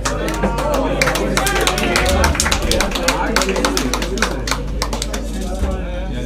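A small audience clapping, with a few whoops and cheers. The clapping dies away near the end.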